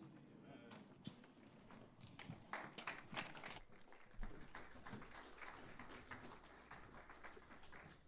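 Faint footsteps and light knocks on a wooden stage floor, many short, irregular taps, with faint murmuring voices.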